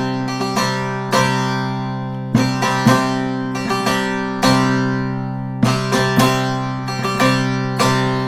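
Short-neck bağlama (kısa sap saz) played with a plectrum in a zeybek-style strumming pattern on la and mi. It comes in repeating groups of quick down-and-up strokes, with fast doubled 'mi-mi' strokes, each group ringing and then fading before the next.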